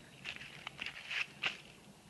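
Several faint, short clicks and scuffs, about five in two seconds. There is no gunshot.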